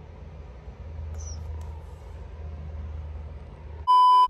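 A steady low hum, with a faint short high chirp about a second in; just before the end a loud, steady, single-pitched beep like a television test-pattern tone cuts in.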